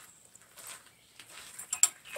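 Quiet, then a quick cluster of two or three sharp clicks near the end: glassware knocking, a glass pipette tapping against the neck of a glass flask.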